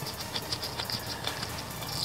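Faint, irregular clicking and scratching as a gloved hand turns a small bolt on an ATV's front differential housing.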